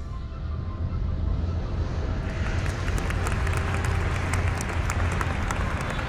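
A crowd applauding, the clapping swelling about two seconds in over a steady low hum, as background music fades out at the start.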